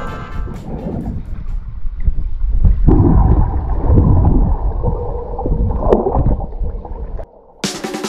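Muffled underwater water noise picked up by a submerged camera: a dull, low rumble and sloshing with the higher sounds cut off. Near the end it drops out briefly and background music begins.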